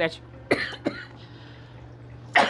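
A woman coughing twice in quick succession, about half a second in, the first cough the louder.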